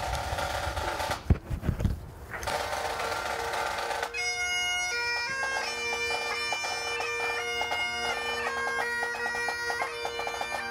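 Bagpipes strike up. A steady drone comes in about two and a half seconds in, and the chanter starts a slow melody of held notes over the drones about four seconds in. A few dull thumps come before it.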